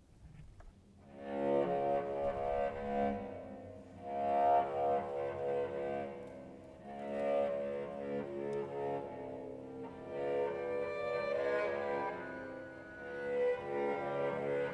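Violin, viola and cello begin playing about a second in: sustained bowed chords that swell and fade in phrases of about three seconds.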